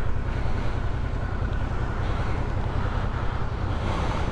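Steady wind noise buffeting a helmet microphone over a low, even motorcycle engine rumble while riding.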